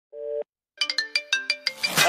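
Mobile phone ringtone: one short tone, a brief pause, then a quick melody of about nine short notes that each die away fast.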